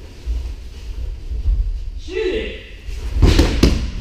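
Heavy thuds of bodies landing on tatami mats as partners throw each other to the floor, with the loudest cluster of impacts near the end. A voice calls out about two seconds in.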